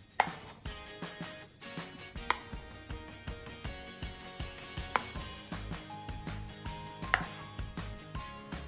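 A metal spoon stirs and scrapes a thick mashed-potato filling in a bowl, knocking sharply against the bowl's side about four times, every two seconds or so. Background music plays throughout.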